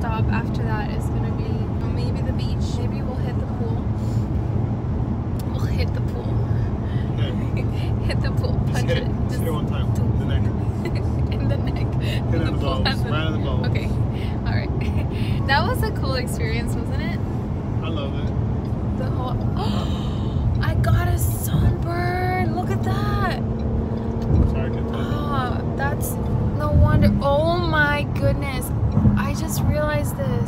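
Steady low rumble of road and engine noise inside a car cabin while driving.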